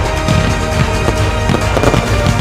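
Aerial fireworks bursting, about four sharp reports in two seconds, over loud pop music.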